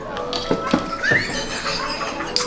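Voices of a small group with a short, high, rising vocal cry about a second in, and two sharp clicks just before it.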